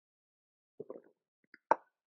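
A few soft low sounds about a second in, then one sharp knock near the end: a clear glass water mug set down on a table after a drink.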